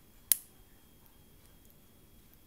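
A single sharp click of plastic Lego pieces snapping together as the small red 'Chinese hat' piece is pressed onto the black bar piece, about a third of a second in. Faint room tone for the rest.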